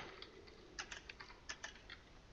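Computer keyboard typing: a run of faint, irregular keystrokes as a short phrase is typed.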